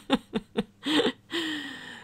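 A woman chuckling: a few quick laughing breaths, then a long falling voice sound near the end.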